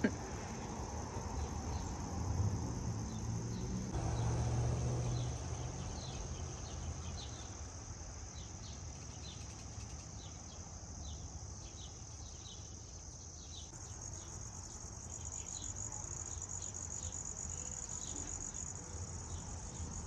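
Steady high-pitched insect trilling that grows louder about two-thirds of the way through, with a faint low rumble in the first several seconds.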